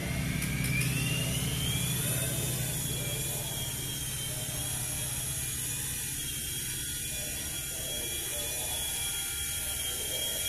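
Nine Eagles Bravo SX small electric RC helicopter spooling up: a motor whine rising in pitch over the first two or three seconds, then holding steady over a low hum.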